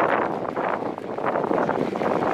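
Wind buffeting a handlebar-mounted camera's microphone as a bicycle rolls along a dirt trail, with a dense crackle of tyres on the gravelly ground.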